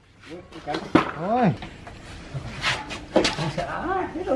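Brief wordless calls from men straining to shift a heavy tank, with two sharp knocks, about a second in and again past the three-second mark, as wooden boards are set down on a tiled floor.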